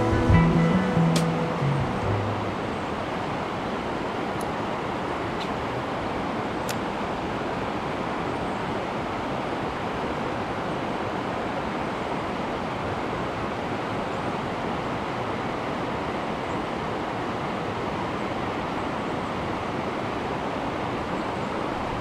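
Guitar music fades out in the first two seconds, then a trout stream rushes steadily as its current pours over a low stone weir.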